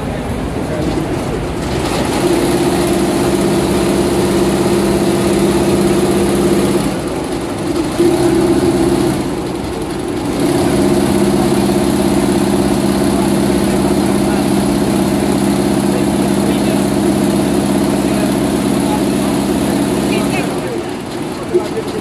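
Richpeace high-speed multi-head mixed chenille embroidery machine sewing: a steady mechanical hum that starts about two seconds in, drops out briefly twice around seven and nine seconds in, and stops about twenty seconds in before starting again at the very end.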